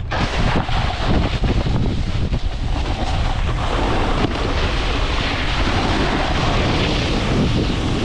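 Wind rushing over the microphone of a camera moving fast down a snow slope, with the scrape of snowboards sliding on packed spring snow. The noise runs loud and steady, with a few short scraping surges in the first second or so.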